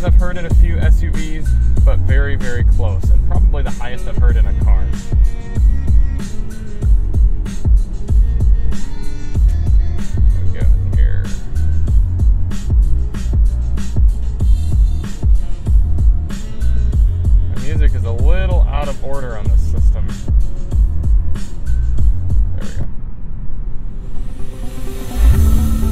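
Bass-heavy track with vocals played loud through a car's Bowers & Wilkins sound system, set with bass and subwoofer all the way up: a deep, pulsing bass beat. The track cuts off about a second before the end.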